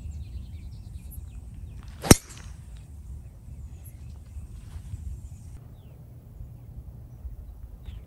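Golf driver striking a teed-up ball on a tee shot: one sharp crack about two seconds in, over a steady low background rumble.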